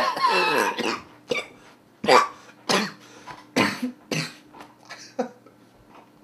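A man's short breathy vocal bursts close on a studio microphone: one longer falling sound at the start, then about six separate short bursts over the next five seconds, dying away near the end.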